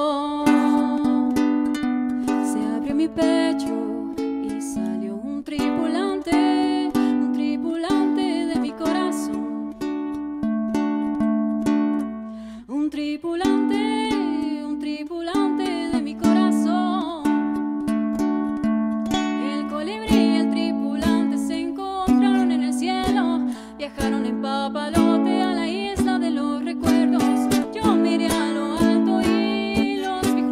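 A woman singing to her own strummed Córdoba ukulele in a live acoustic performance.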